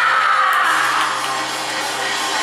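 Live Taiwanese opera (gezaixi) music, opening with a falling slide in pitch that settles into a dense stretch of accompaniment.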